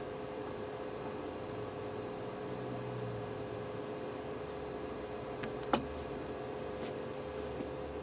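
Quiet room with a faint steady hum while red fabric is cut with dressmaking scissors, giving a few faint snips. A little past halfway comes one sharp metal click as the scissors are set down on the cutting table.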